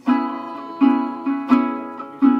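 A small ukulele-sized guitar strummed in a steady rhythm: three chords, each ringing on and fading before the next strum.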